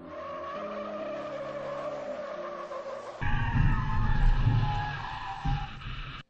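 SUVs driven hard on tarmac, tires squealing as they skid through sharp turns. From about three seconds in, a loud engine rumble joins the squeal, which rises to a higher pitch.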